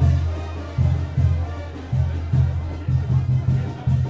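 Mexican banda (brass band) playing music, with a deep bass beat pulsing about two to three times a second.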